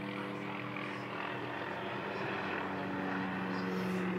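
Police helicopter circling overhead: a steady drone of rotor and engine with a constant low pitch, growing a little louder near the end.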